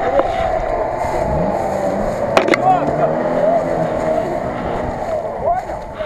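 Off-road 4x4 engine running under load while stuck in deep mud, revving up between about one and three seconds in, over a steady whine. There is a single sharp click about halfway through, and voices call out around it.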